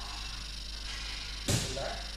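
A single sharp knock about one and a half seconds in, over steady background hiss.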